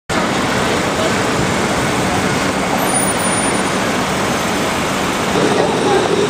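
Steady city street traffic noise, an even rush of passing vehicles with a faint low hum.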